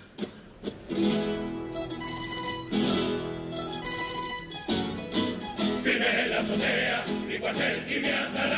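Instrumental introduction to a Cádiz carnival coro tango, played by a band of guitars and bandurrias. They strum sustained chords with strong attacks about one, three and five seconds in, and the playing grows busier and denser about six seconds in.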